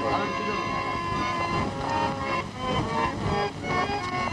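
Several people's voices calling out, over a steady held tone during the first half.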